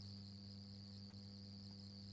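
Faint steady background noise with no speech: a low hum with a high-pitched, continuous whine above it.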